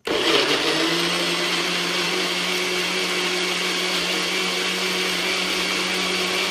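NutriBullet personal blender running, its cup pressed down to blend a smoothie: a loud, steady motor whine over the churning of the liquid, starting abruptly.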